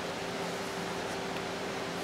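Steady room background: an even hiss with a faint low hum, and no distinct events.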